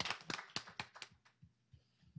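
Applause thinning out to a few last scattered claps and dying away after about a second and a half.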